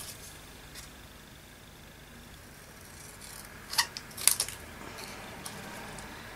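Small craft scissors snipping paper: two short, sharp snips about half a second apart, a little under four seconds in.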